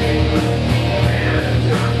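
Metalcore band playing live: loud, dense electric guitars, bass and drums.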